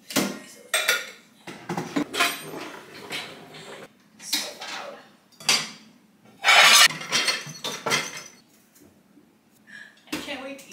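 Dishes clinking and clattering in irregular bursts as a dishwasher is unloaded and the dishes are stacked into kitchen cupboards; the loudest, a longer rattle, comes about two-thirds of the way through.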